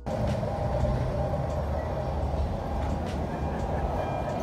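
Steady low rumble of noise inside a car, with the engine running.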